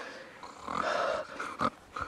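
A short, breathy, dog-like growl lasting under a second, followed by a sharp click.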